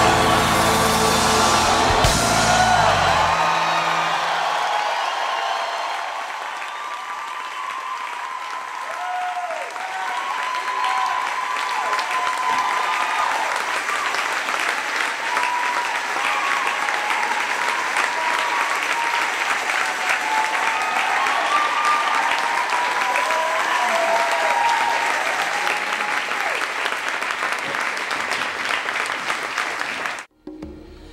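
Music ends about three seconds in. A large audience then applauds at length, with scattered voices calling out over the clapping.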